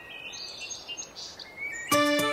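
Faint bird chirps over a soft background hiss, ending when music comes back in sharply near the end.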